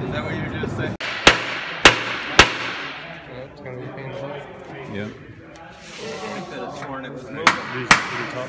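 Three sharp hammer blows about half a second apart on a Gravely rider's transmission case, then two more near the end, knocking at the case to work it loose for splitting. Men's voices and laughter fill the gaps.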